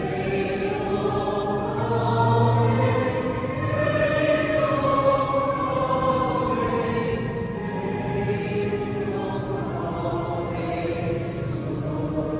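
Choir singing a slow liturgical piece with long held notes, carried on the reverberation of a large church.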